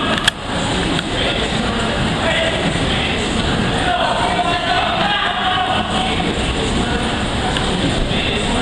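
Indoor soccer game ambience: players' voices calling out, echoing in a large hall, over a steady noisy background, with one sharp knock just after the start.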